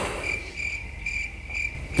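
Cricket chirping in short, even chirps, about two a second, over an otherwise quiet room: the familiar crickets sound that marks an awkward silence, here while the singer has forgotten his words.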